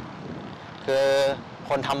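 Steady low hum of road traffic on the elevated expressway overhead, heard in a short pause; a man's speech comes in about a second in.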